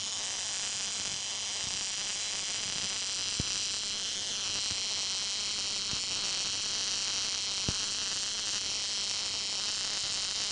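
Homemade Tesla coil driven by a 12-volt Royer flyback driver, drawing a small arc to a screwdriver: a steady high-pitched buzz with a few sharp snaps, two louder ones in the middle and later on.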